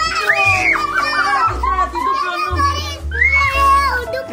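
Excited children's voices over background music with a deep, steady bass line.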